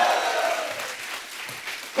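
Studio audience applauding, dying away over the second half.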